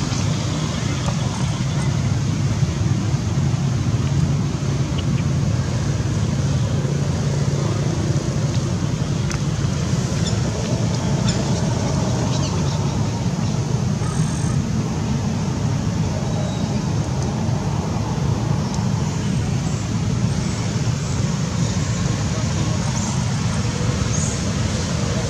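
A steady low outdoor rumble without a clear beat, with faint voices and a few light ticks now and then.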